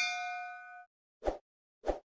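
A bell-like notification ding sound effect, ringing with several clear tones and fading out within the first second. It is followed by two short, soft pops about half a second apart.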